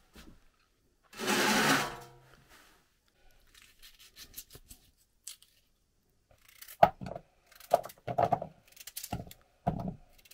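A loud, rasping scrape lasting about a second near the start, then a knife peeling and cutting potatoes over a plastic bowl: small clicks and short sharp knife strokes, coming quicker in the last few seconds.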